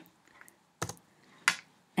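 Computer keyboard keystrokes: two sharp key presses about two-thirds of a second apart, with a fainter tap before them, as a number is entered into a spreadsheet cell.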